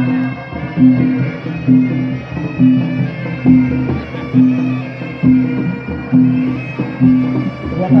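Traditional music of the kind that accompanies a martial-arts display: a reedy wind instrument holds a high melody over a low, gong-like beat that comes about once a second.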